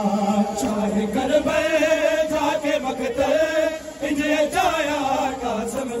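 A male noha reciter's amplified voice chanting a Shia lament (noha), holding long drawn-out notes that waver in pitch, with a falling phrase about three-quarters of the way through.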